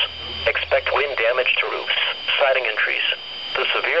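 Only speech: a weather radio's automated voice reading out a severe thunderstorm warning through the radio's small speaker.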